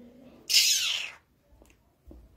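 A short high-pitched squeal that falls in pitch, about half a second long.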